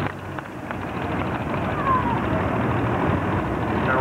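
Turbocharged International pulling tractor running on the track, a steady, noisy rumble.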